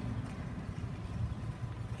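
Faint, steady outdoor background noise with a low rumble and no distinct sounds in it.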